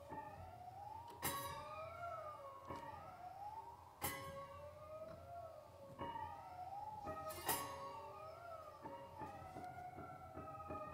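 Improvised prepared-piano music, the grand piano played on its strings: several wavering, siren-like tones glide up and down and cross each other. Three sharp struck notes ring out, about a second in, about four seconds in and near seven and a half seconds.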